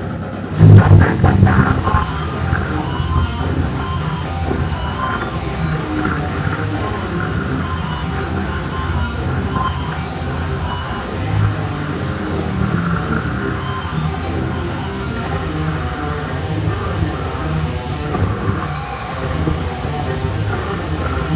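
Electric guitar playing a heavy metal solo over dense, loud band music, with a strong accent about half a second in.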